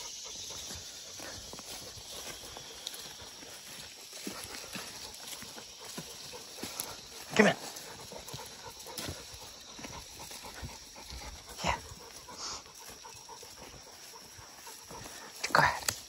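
Footsteps and leaves rustling as a person and a leashed dog walk through low, leafy ground cover, with a few short, sharper sounds scattered through.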